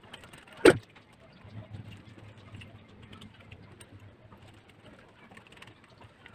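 Screwdriver work on a metal wall-lamp bulb holder: one sharp knock a little under a second in, then faint scattered clicks and scrapes of the tool and metal parts being handled.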